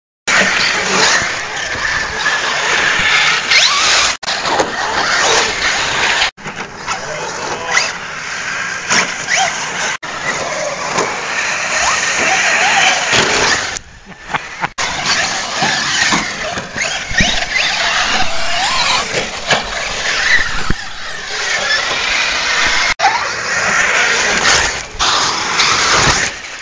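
Radio-controlled cars running on a dirt track, their motors whining up and down in pitch as they accelerate and slow. The sound breaks off briefly several times, longest about halfway through.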